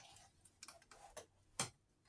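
A boxed toy figure's cardboard-and-plastic packaging handled in the fingers: a few faint, scattered clicks and taps, the sharpest about one and a half seconds in.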